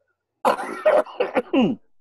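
A man gives a short laugh and clears his throat, a single rough vocal burst of about a second and a half.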